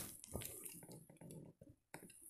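Faint handling noises: fingers turning a small diecast model pickup, with a click at the start and a few light ticks and rubs.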